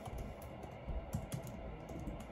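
Typing on a laptop keyboard: an uneven run of soft key clicks.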